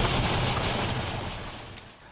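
Steady rushing noise with a low rumble from a handheld camera's microphone as it is carried, fading away over the last half second.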